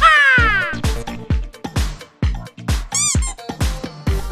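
Upbeat background music with a steady beat, overlaid with comic sound effects: a long falling whistle-like glide at the start and a short squeak that rises and falls about three seconds in.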